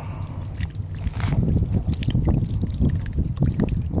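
Muddy water and sand sloshing around in a plastic gold pan as it is shaken vigorously back and forth to liquefy the material, an irregular churning sound with no steady rhythm.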